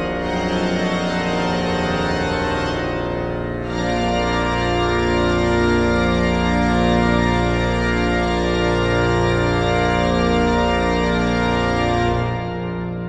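Pipe organ built by the Wegscheider workshop, playing a many-voiced piece over a held deep pedal bass. About four seconds in, the sound grows fuller and louder.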